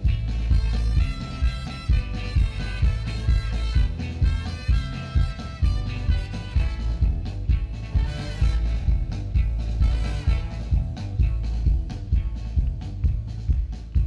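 Live ska-punk band playing an instrumental passage: trumpet and trombone lines over electric guitar, bass and drums with a steady driving beat. The held horn lines stand out most in the first half, then drop back under the rhythm section.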